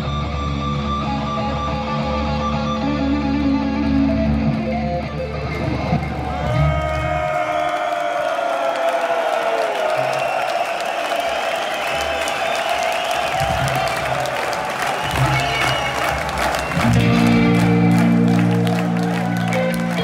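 A heavy metal band playing live with distorted electric guitars. About seven seconds in the bass and drums drop out, leaving guitar with sliding, falling notes, and the full band comes back loud near the end.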